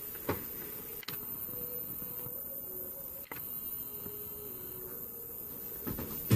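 Steady background noise of a small room with a faint hum, and a single light click about a third of a second in.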